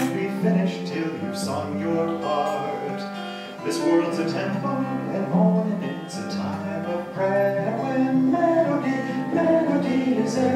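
Acoustic guitar being strummed, with a man's voice over it at times.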